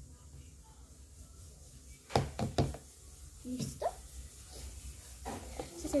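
Two sharp knocks half a second apart about two seconds in, from a plastic mixing cup and glue bottle being handled while slime is mixed, over a faint low hum. A short pitched sound follows, and a girl's voice begins near the end.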